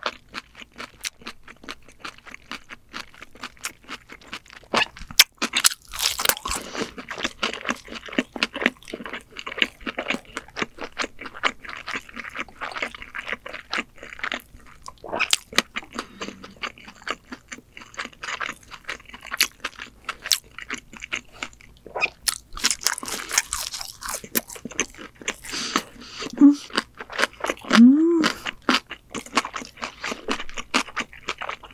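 Close-miked eating of a pan-fried ramen-noodle pizza with melted cheese: crunchy bites and steady chewing with wet mouth sounds, a dense run of crackles and clicks that swells in a few louder bursts. A short hummed sound comes near the end.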